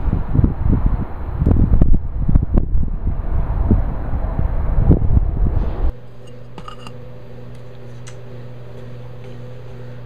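Wind buffeting the camera microphone outdoors, loud and gusty, cutting off suddenly about six seconds in. It gives way to a steady low machine hum, like a room fan, with a couple of light knocks.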